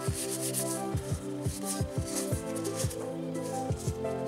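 Background music with a steady beat, with the soft rubbing of trading cards sliding against each other as they are flipped off a stack.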